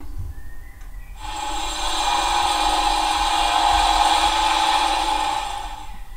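Air-compressor sound effect from the sound decoder of a PIKO H0 model of the PKP SU46 diesel locomotive, played as function F17. A low rumble is joined about a second in by a louder, steady compressor hum with hiss, which runs on and starts to fade near the end.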